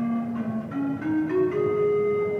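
Ion Piano Master keyboard playing its iPad app's pan flute sound: a short rising run of about five notes, the last one held for over a second.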